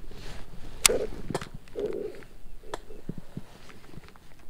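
A cast with a baitcasting rod and reel from a kayak: a brief swish, then sharp clicks from the reel, the loudest about a second in, with a few softer clicks and light knocks of rod handling after it.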